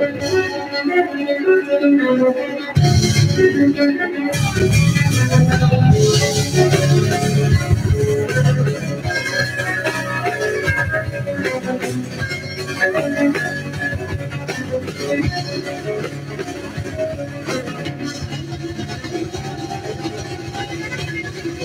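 A live band playing through a PA, with acoustic and electric guitars, bass, drum kit and violin. The low end swells heavier about three seconds in and eases off again after about eight seconds.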